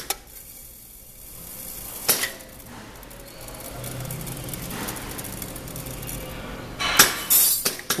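Semi-automatic seed weigh-filler running a fill cycle: seeds pour and trickle into its stainless steel weigh bucket over a steady low hum. Sharp metallic clacks come about two seconds in and, loudest, near the end, from its air-operated gates and bucket.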